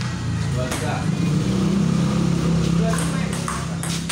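Table tennis ball clicking off paddles and the table during a rally, over a steady low hum and background voices.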